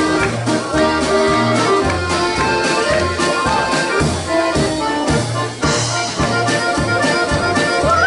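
Live polka played by two accordions with drum kit and acoustic guitar, the accordions carrying the tune over a steady, even beat.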